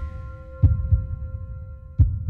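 Sound-design effects for a logo animation: two deep, heartbeat-like thumps just over a second apart, under a fading ringing chord of a few steady tones.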